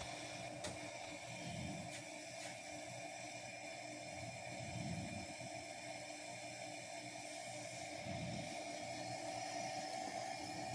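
8-track tape player running a cartridge through the silent lead-in before the music: a steady tape hiss with a faint hum, and a few faint ticks in the first couple of seconds.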